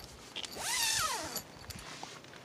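A tent door zipper pulled once along its track for about a second, its rasp rising and then falling in pitch.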